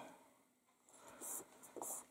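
Faint rubbing and rustling of fingertips on paper as a strip of designer paper is pressed down onto card, in two short brushes, one about a second in and a shorter one near the end.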